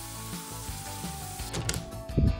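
Soft background music over a steady hiss. Near the end, a quick rattle of clicks from a round doorknob being turned.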